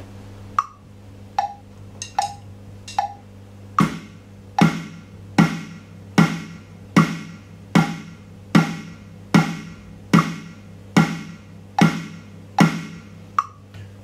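Electronic drum kit's snare pad played in steady quarter notes, alternating hands, in time with a 75 BPM click track. Four clicks count in, then twelve even snare hits land one on each click, a little under a second apart, and a last click sounds near the end.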